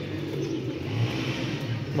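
Domestic pigeons cooing at their rooftop loft, over a low steady hum that slowly grows louder.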